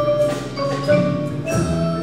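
Percussion ensemble playing a tune on mallet instruments: bright struck notes ringing out in a steady rhythm over lower sustained notes.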